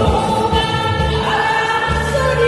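Two women singing a Korean trot song together into microphones over an amplified backing track with a steady bass line, holding long notes with vibrato.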